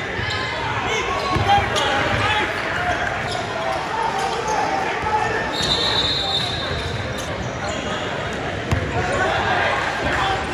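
Echoing basketball gym during a game: a ball bouncing on the hardwood court, with the indistinct voices of players and spectators filling the hall.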